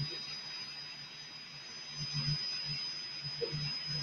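A quiet pause: faint room tone with a thin, steady high-pitched tone and a faint, wavering low hum.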